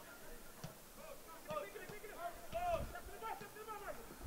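Faint, distant voices of players shouting and calling across a soccer field, with a couple of dull low thumps about two and a half seconds in.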